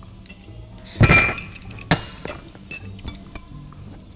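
Teacups and saucers clinking on a table: a loud ringing clink about a second in, a sharper one just before two seconds, then a few lighter clinks.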